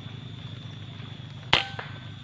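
Air rifle firing a single sharp shot about one and a half seconds in, over a steady low background hum; the shot hits the bird.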